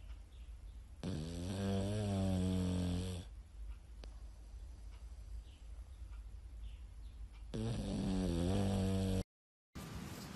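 Sleeping pug snoring: two long pitched snores, one starting about a second in and another near the end, with quieter breathing between. Loud snoring is typical of the breed's short-muzzled, narrow airway.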